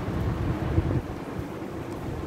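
Uneven low rumble of wind noise on the microphone, gusting irregularly.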